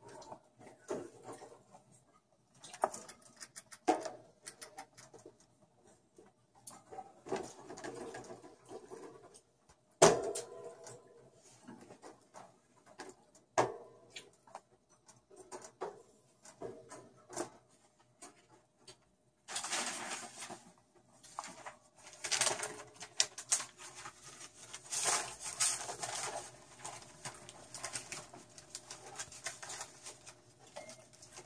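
Pet rats moving about a white wire cage: scattered clicks and rattles of the bars, with one sharp knock about ten seconds in. In the last ten seconds there is a longer stretch of rustling and scrabbling.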